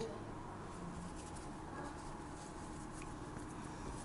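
Quiet kitchen room tone with faint, soft handling sounds of hands shaping yeast dough on a floured countertop.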